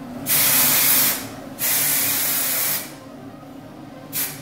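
Aerosol hairspray sprayed in two steady hissing bursts of about a second each, with a short pause between them.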